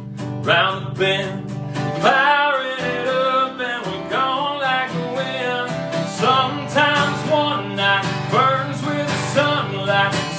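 A man singing while strumming a steel-string acoustic guitar, a steady strummed rhythm under his voice.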